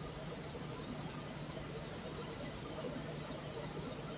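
Steady low hum with a faint hiss: room tone.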